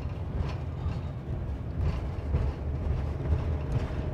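Road and engine noise heard inside a motorhome's cab while cruising along a paved road: a steady low rumble.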